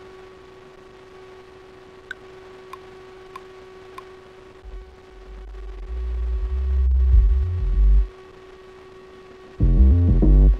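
Electronic beat from the Ableton session: after a steady hum and four faint ticks, a deep synth bass swells up about halfway through and cuts off suddenly, then the full beat with bass and chords comes in loudly near the end.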